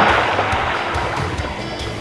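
Splash of a person diving into a swimming pool: a loud rush of water at the start that fades into churning and sloshing.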